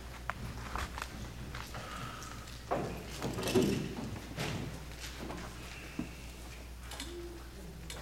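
Footsteps and scattered knocks on a wooden stage floor, echoing in a hall, with the loudest thuds about three and a half seconds in.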